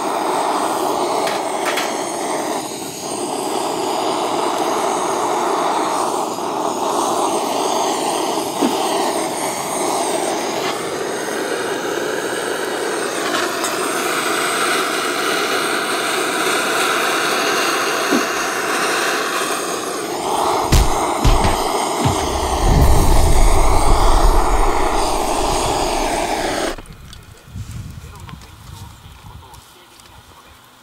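Butane cartridge gas torch burner hissing steadily and loudly while heating a cast-iron Dutch oven. The hiss shifts higher in pitch for several seconds in the middle as the flame is aimed differently. A few low thumps come near the end, just before the hiss stops abruptly.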